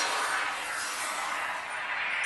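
Video soundtrack playing through a Samsung Galaxy S4's loudspeaker: a steady rushing hiss with no clear tune or beat.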